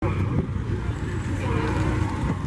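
A car engine running close by, a steady low rumble, with people talking faintly in the background.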